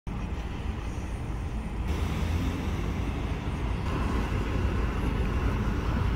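Steady city street traffic noise: a low, continuous rumble of passing cars, a little louder after about two seconds.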